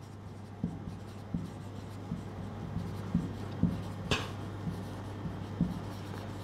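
Marker pen writing on a whiteboard: faint short scratching strokes over a steady low hum, with a brief hiss about four seconds in.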